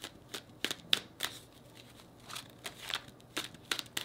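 A deck of tarot cards being shuffled in the hands: a quick run of card slaps and riffles, a short pause near the middle, then another run.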